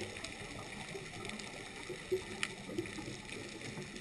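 Underwater ambience picked up by a submerged camera: a steady muffled wash of water noise, with a few sharp clicks a little past halfway.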